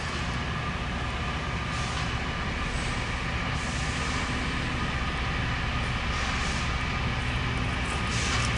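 Loram rail grinder train approaching slowly: a steady low engine rumble with a few steady whining tones over it, growing slightly louder as it nears.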